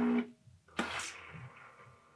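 Breville Barista Touch steam wand auto-purging: the pump drones steadily with a buzzing tone and cuts off just after the start. Just under a second in comes a short burst of steam hiss that fades away.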